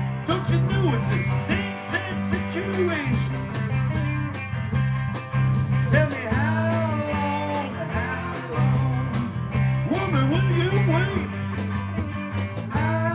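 A small rock band playing live: a lead electric guitar plays bending notes over a bass line and a steady drum beat, with no vocals.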